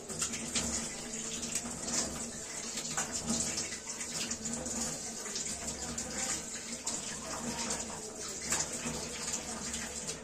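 Water running from a tap into a kitchen sink, with frequent splashes as handfuls of water are thrown on the face to rinse off a face scrub. The water cuts off at the end.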